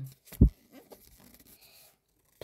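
A paper picture-book page being turned by hand: a single dull thump about half a second in, then faint rustling of paper.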